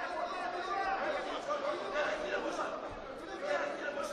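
Several voices talking and calling out at once, the chatter of people around a wrestling mat.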